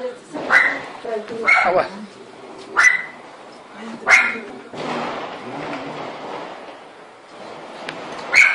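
A dog barking in four short, sharp barks about a second apart, followed by a few seconds of softer, steady noise.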